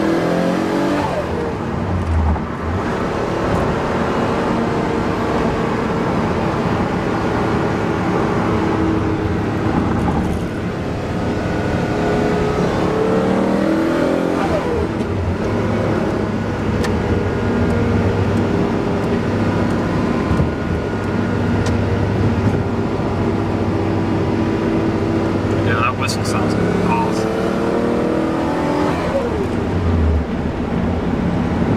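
Noble M400's twin-turbocharged 3.0-litre Ford Duratec V6 heard from inside the cabin under way on the highway. The engine note climbs in pitch and then drops three times, about a second in, around fourteen seconds in and near the end, as it goes through the revs and changes gear.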